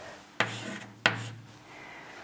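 Chalk writing the letter Q on a blackboard: two strokes, each starting sharply and trailing off, the second about two-thirds of a second after the first.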